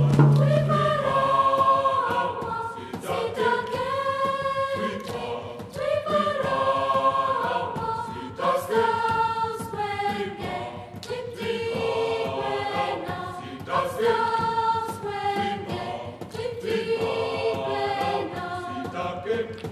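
A group of voices singing a song together in choir style, in phrases of a second or two. A low held note sounds at the start and stops about a second and a half in.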